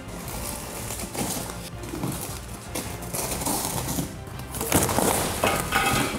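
A cardboard box being slit open along its taped edge with a blade and its flaps torn back, with crinkling plastic wrap and scraping cardboard, over background music.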